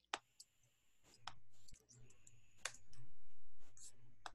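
About five sharp, separate clicks at a computer, made while a link is being selected and copied.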